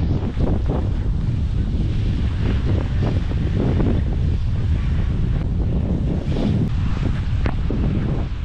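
Wind buffeting the microphone in an uneven, gusty rumble, over the steady wash of surf breaking on a sandy beach.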